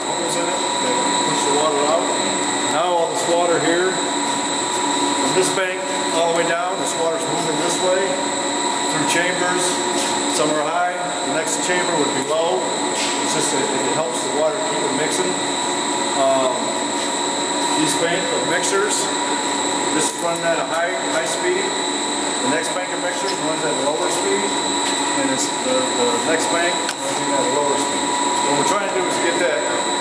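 People talking indistinctly over the steady drone of water treatment plant machinery, which carries a constant high whine throughout.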